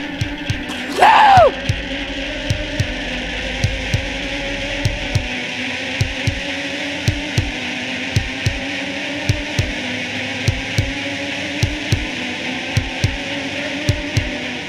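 Horror film score: a sustained eerie drone with a steady heartbeat-like pulse of low double thumps. About a second in, a short, loud swoop falls sharply in pitch.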